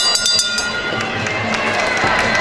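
Ring bell struck rapidly, ringing out in quick repeated strokes for about the first half second: the signal for the end of the round. Crowd chatter continues underneath and after it.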